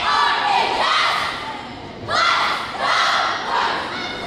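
A cheerleading squad shouting a crowd cheer in unison, in short rhythmic phrases about a second apart, with a brief lull about two seconds in.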